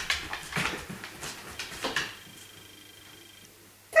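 A kelpie's claws clicking on a hardwood floor as it trots in with a wooden dumbbell, a series of light clicks in the first two seconds that fade as the dog settles into a sit.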